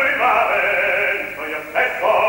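Operatic tenor singing over an orchestra. The sound grows quieter past the middle, then comes back loud with a sudden entry near the end.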